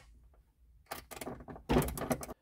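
Socket ratchet clicking in short runs as the subwoofer's ground-wire bolt is fastened to the car's chassis, after about a second of near silence, with a louder knock near the end.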